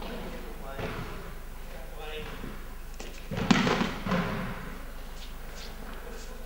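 A person taking a breakfall onto the practice mat after an aikido throw: a loud thud about three and a half seconds in, then a smaller thud about half a second later.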